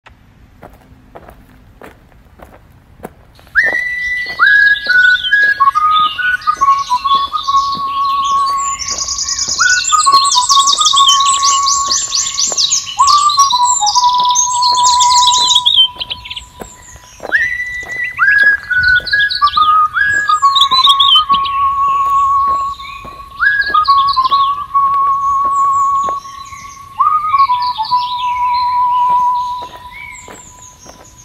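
Instrumental music intro: a whistle-like lead plays phrases that swoop down from a high note and settle into held notes with vibrato, over a light tick about twice a second. The music starts about three and a half seconds in.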